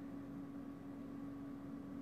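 Quiet room tone: a faint even hiss with a steady low hum held on one pitch.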